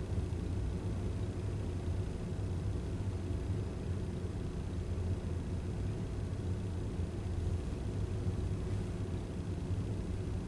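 Steady low hum and rumble of room tone, with no clear events or speech.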